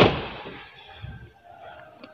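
A 2013 Ford Fiesta's front door being slammed shut once, a single sharp thud at the start that dies away over about half a second.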